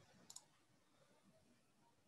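Near silence, broken by a quick faint double click of a computer mouse about a third of a second in.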